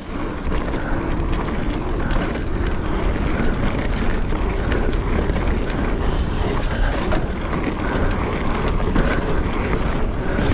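Trek Fuel EX 7 mountain bike rolling at speed: a steady rush of wind on the camera microphone with tyre rumble and frequent small rattles and clicks from the bike.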